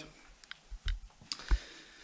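A few scattered light clicks and knocks, the loudest about one and a half seconds in.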